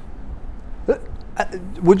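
Speech: a short pause in men's talk, broken by two brief vocal sounds, then a man starts speaking near the end.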